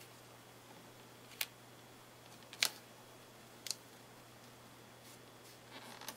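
Quiet room tone with a low steady hum, broken by a few faint, sharp clicks about a second apart as fingers press and smooth washi tape strips onto cardstock.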